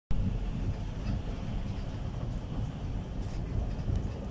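Passenger train running, heard from inside the carriage: a steady low running noise of the train in motion.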